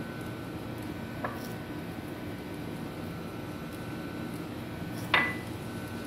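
Steady kitchen room hum with a small click a little over a second in, then one sharp clink of kitchenware with a short ring about five seconds in, as seeds are sprinkled over pastries on a baking tray.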